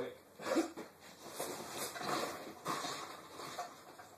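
Faint, irregular rustling and light knocks of someone rummaging through gear off-camera, looking for a grip.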